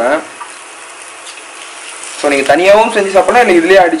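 Cabbage frying in a pan, a steady sizzle, heard on its own for the first couple of seconds; then a voice talks over it from about two seconds in.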